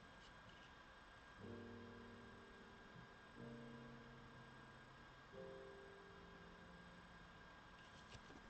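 Faint, soft background music: three sustained low notes or chords, starting about two seconds apart, each ringing on and fading away.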